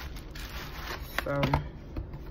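Rustling handling noise of a makeup palette being opened, with a few light clicks.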